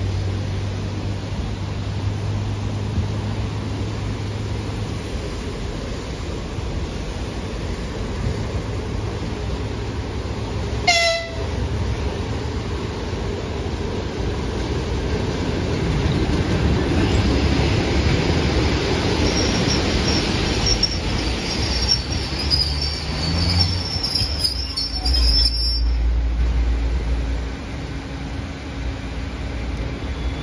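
EP3D AC electric multiple unit arriving at a platform: one short horn blast about a third of the way in, then the rumble of its wheels grows as it runs in alongside, with a high squeal as it brakes to a stop that cuts off shortly before the end, leaving a low hum from its equipment.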